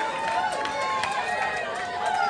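Concert audience cheering and calling out, many voices whooping over one another, with a few sharp claps.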